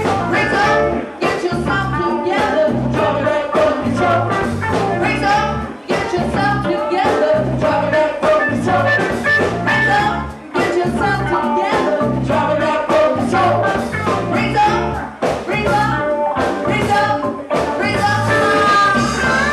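Live funk-soul band playing, with a repeating bass guitar line, regular drum beats, keyboard, guitar and congas.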